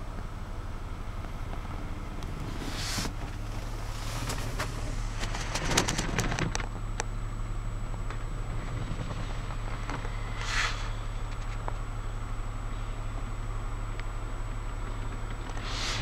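Steady low hum with a thin high whine over it, and brief rustles and clicks a few seconds in and again about ten seconds in.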